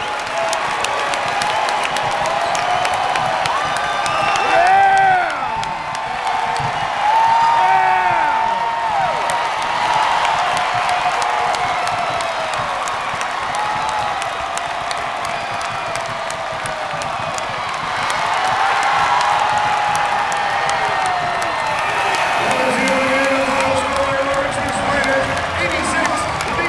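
Arena crowd cheering, clapping and yelling in celebration of a home basketball win. Long rising-and-falling yells stand out over the steady cheering and clapping.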